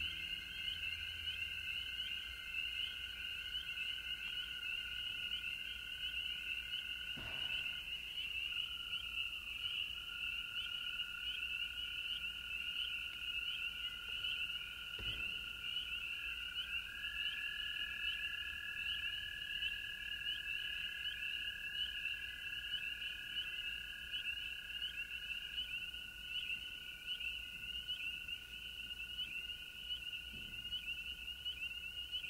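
A dense chorus of spring peepers (tiny tree frogs), a steady shrill mass of overlapping peeps. Beneath it a lower held tone runs on, and a second slightly higher tone joins it for about eight seconds in the middle.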